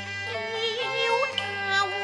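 A woman singing a Cantonese opera song with wide vibrato, over steady instrumental accompaniment.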